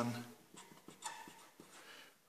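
A marker pen writing on paper in short, faint scratchy strokes.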